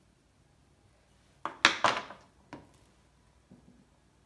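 Pottery tools handled on a wooden worktable: a brief clatter of several quick knocks about a second and a half in, then one more knock about a second later, as a metal scoring tool is put down and a wooden modelling tool is picked up.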